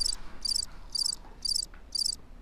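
Cricket chirps, short and high, about two a second and evenly spaced: the comic 'awkward silence' cricket sound effect edited into a pause.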